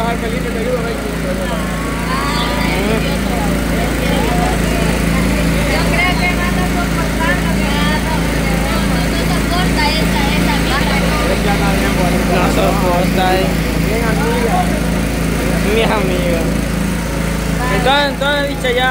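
A small engine runs steadily, a constant low drone, under several people talking.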